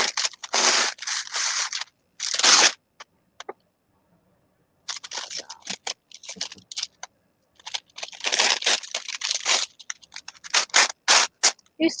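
Wax paper rustling and crinkling as it is handled, in irregular bursts with a short pause in the middle.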